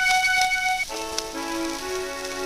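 A 1912 acoustic recording of a solo accordion plays from a shellac 78 rpm Columbia disc, with steady surface crackle and hiss. A long high melody note gives way, a little before halfway, to lower sustained chord notes.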